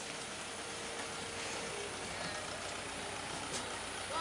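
Steady outdoor ambient noise, an even hiss, with a faint brief hum early on and a soft click near the end.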